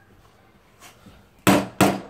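Toy hammer banging twice in quick succession on a plastic toy workbench, two sharp, loud knocks about a third of a second apart.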